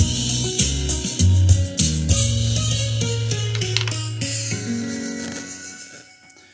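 Music streamed over Bluetooth from a phone and played through the Panasonic RX-CT890 stereo's speakers, fading out over the last couple of seconds.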